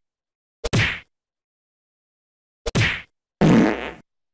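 Editing sound effects for text popping on screen: two short hits, each a sharp click followed by a brief fading swish, about a second in and near three seconds, then a longer, rougher effect just before the end.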